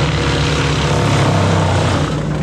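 Excavator diesel engine and a Bandit wood chipper running close together: a loud, steady engine drone with a dense rushing hiss over it, the low engine note dipping briefly in the second half.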